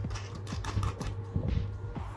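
Light, irregular clicks and taps as a hand handles steel bolts, nuts and washers set in a plywood board.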